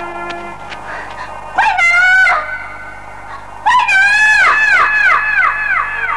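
A high woman's voice calling "Hui Neng!" twice, about a second and a half in and again near four seconds. Each call falls in pitch, and the second repeats several times as it fades, like an echo across mountains. Soft background music plays underneath.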